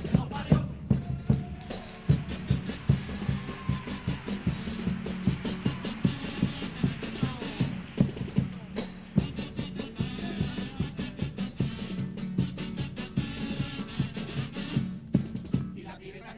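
Chirigota carnival band's bass drum (bombo) and snare drum (caja) beating a quick, steady rhythm, with the band playing along.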